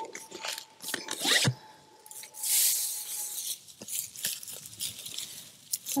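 Loose cut hay crunching and rustling in irregular bursts as it is packed down into a pipe moisture sampler with a plunger and fresh handfuls are grabbed from the swath.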